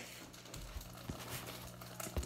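Quiet kitchen room tone: a faint steady low hum with two or three soft knocks.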